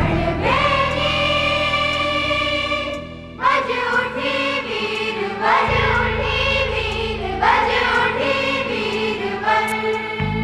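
A choir singing a patriotic song in sung phrases over sustained low accompaniment notes. There is a brief dip about three seconds in, then new phrases begin about every two seconds.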